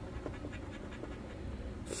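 A coin scraping the latex coating off a lottery scratch-off ticket, in faint quick strokes.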